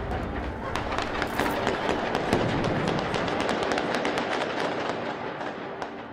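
Heavy gunfire from an armed police assault: many shots in quick succession, with a few louder blasts among them.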